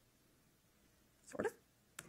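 Near silence, then a woman says a brief, quiet 'sort of' about a second and a half in.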